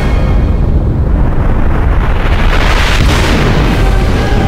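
Cartoon fight sound effects under the score: a deep, continuous rumbling blast, swelling into a louder rushing crash about three seconds in as a body is hurled upward with flying debris.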